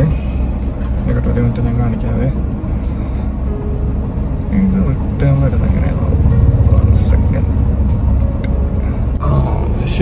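Steady low rumble of a car's engine and road noise heard from inside the cabin while driving, with music and some faint talk over it.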